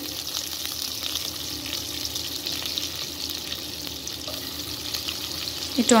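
Chopped onions and dried red chillies frying in hot oil in a pot, a steady sizzling hiss with faint crackles, as the onions are fried toward brown.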